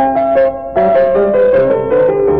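Piano playing a classical piece, with several notes sounding at once and a new group of notes struck just under a second in. It is an old home recording.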